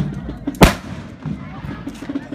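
A single loud, sharp bang about half a second in: a blank shot from a musketeer's black-powder musket, over murmuring crowd voices.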